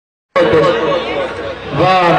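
Dead silence for about a third of a second, then people talking, several voices at once.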